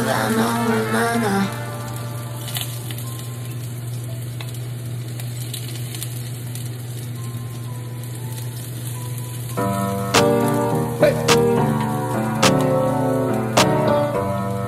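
Minced garlic sizzling in hot oil in a nonstick frying pan as it is stirred with a wooden spatula, a steady hiss. Hip-hop music plays over it, drops away after the first second or two and comes back with a beat about ten seconds in.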